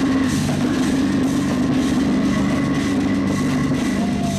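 Metalcore band playing live and loud: heavily distorted guitars and bass holding low notes over a drum kit.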